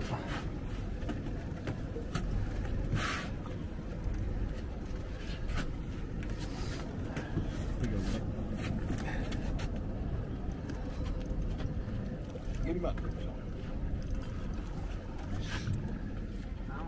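Steady low rumble of background noise aboard a small boat on open water, with faint, indistinct voices now and then.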